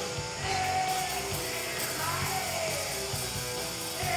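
Live rock band playing: a singer's voice over electric guitars, bass and a drum kit with cymbals.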